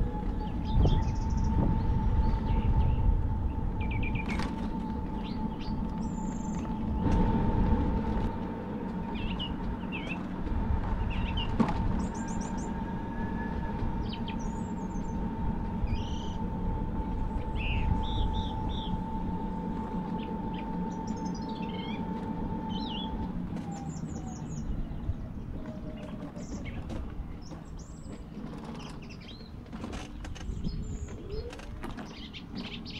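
Electric scooter motor whining at a steady pitch while riding, with wind rumbling on the microphone and birds chirping throughout. A little over two-thirds of the way through, the whine drops in pitch and fades as the scooter slows to a stop.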